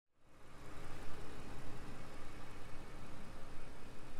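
The twin-turbocharged 6.0-litre W12 of a 2023 Bentley Flying Spur Speed idling steadily, heard from outside the car, fading in over the first half second.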